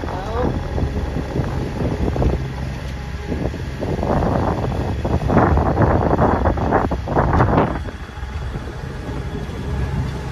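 Wind rushing over the microphone aboard a sailing catamaran under way. The rush is steady with a low rumble, then louder and gusting from about four seconds in until nearly eight seconds.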